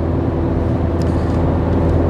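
Steady drone of a car being driven, engine and road noise heard from inside the cabin, with a faint tick about a second in.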